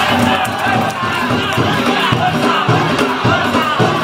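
Danjiri float crowd shouting together over the float's festival music of drums and gongs.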